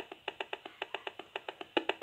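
Fast, even clicking, about eight clicks a second, from the built-in speaker of a Gigahertz Solutions HF 35C RF analyser. Its audio output is sounding the pulsed radio signal it is picking up from a smart meter as the reading climbs during a transmission spike.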